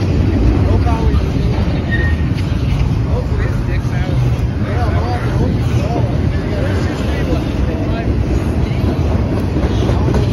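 Double-stack container train cars rolling past close by, a loud, steady low rumble of wheels on rail. Short high squeaks are scattered over it.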